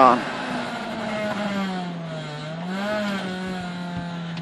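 Honda Integra rally car's engine heard from inside the cabin. Its revs fall away about two seconds in, then pick up again about a second later and hold steady.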